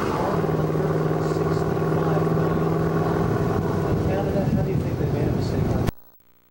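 A vehicle engine running steadily with a low droning tone. The sound cuts off abruptly just before the end as the recording breaks.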